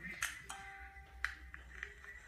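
Smartphone being handled: about four sharp taps or clicks over faint, held musical tones.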